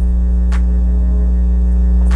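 Steady low droning hum inside a moving bus cabin, from the bus's engine and drivetrain, with a single brief click about half a second in.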